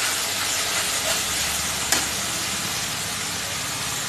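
Masala paste sizzling in hot oil in a kadai as a spatula stirs through it, with one sharp click about two seconds in. A steady low hum runs underneath.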